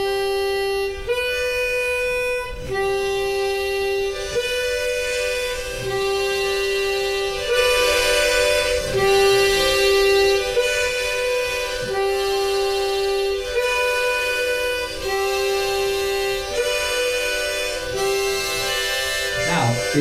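Diatonic harmonica alternating slowly between the hole-3 blow note and the higher hole-3 draw note, each held about a second and a half.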